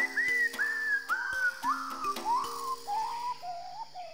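Closing music: a run of about nine short, slurred whistled notes stepping down in pitch, over held low notes, fading out near the end.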